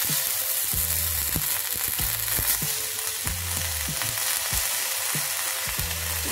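Food sizzling in hot oil in a wok, the sizzle jumping up at the start as chopped ingredients are dropped in. A metal spatula scrapes and knocks against the wok again and again as it stirs.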